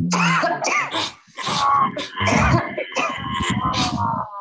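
Several people on a video call doing lion's breath (simhasana): forceful open-mouthed 'haa' exhalations with the tongue out, coming as a string of short breathy bursts mixed with voiced groans from overlapping voices.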